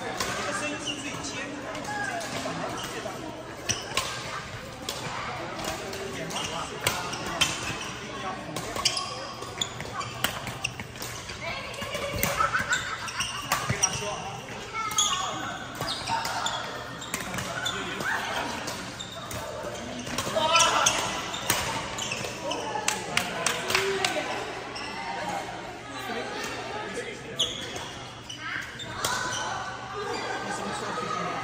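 Badminton rackets smacking shuttlecocks in doubles rallies, sharp hits in quick runs echoing around a large hall, over a background of indistinct voices.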